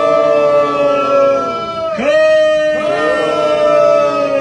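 Men's voices chanting into a microphone in two long drawn-out calls, each held about three seconds. The second begins about two seconds in with an upward slide and drops off in pitch near the end.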